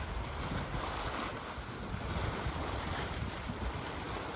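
Hot spring water bubbling and churning steadily where it wells up at the vent, with wind buffeting the microphone.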